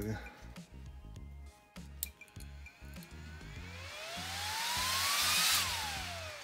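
A few clicks as connectors are pushed together, then a 40 mm cooling fan, run from a 3S battery, spins up with a rising whine and a growing rush of air. It starts winding down with a falling whine near the end. The fan running shows the freshly crimped JST connector makes a good connection.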